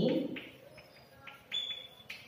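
Chalk writing on a blackboard: a few faint taps and scrapes, then about one and a half seconds in a short, high, steady squeak of the chalk lasting about half a second.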